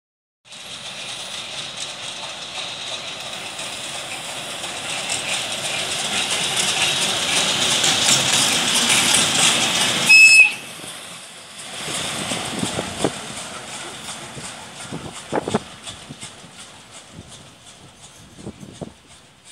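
Diesel locomotive passing close by: the running and rolling noise, with a strong hiss, builds steadily to a peak about ten seconds in, where a short high tone sounds and the noise drops off suddenly. Fainter rail noise with a few knocks follows.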